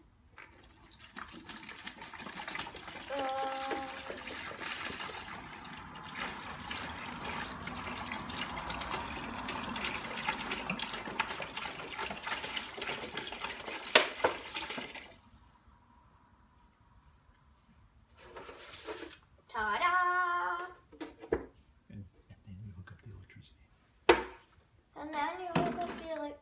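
Water poured from a plastic gallon jug into a plastic bucket, a steady splashing pour that stops about fifteen seconds in, with one sharp knock just before the end. The bucket is being filled for a baking-soda electrolysis bath.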